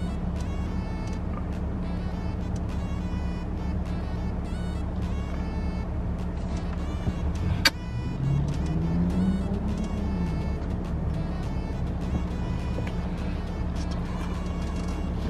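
Steady low hum of a running car heard inside the cabin, with music playing over it. About eight seconds in there is a single sharp click, followed by a short low sound that rises and falls.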